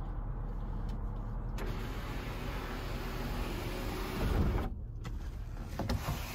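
A Honda Odyssey's 3.5-litre V6 idling, heard from inside the cabin as a steady low hum. From about a second and a half in, a steady hiss rises over it and breaks off abruptly near the five-second mark, then returns briefly.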